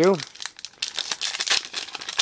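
Plastic-foil wrapper of a 2023 Panini Prizm Draft Picks card pack crinkling in the hands as it is torn open, with many quick crackles.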